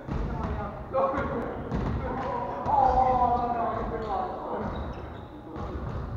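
Voices talking and calling out in a large echoing gymnasium, loudest about halfway through. A few separate thuds, typical of a volleyball bouncing on the wooden floor, fall near the start, about a second in, and near the end.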